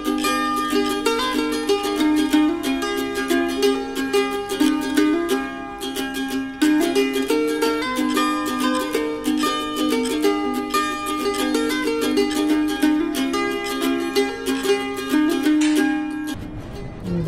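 Background music of bright plucked strings, mandolin and ukulele, playing a quick, steady tune.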